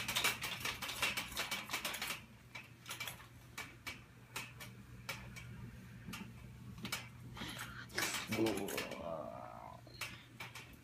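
Dark-ride mechanism rattling with rapid clattering clicks for the first couple of seconds, then only scattered clicks, and a second flurry of clicks about eight seconds in, over a steady low hum.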